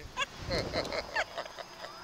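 A woman laughing in short, high, breathy bursts, with wind rumbling on the microphone of the moving Slingshot ride about half a second in.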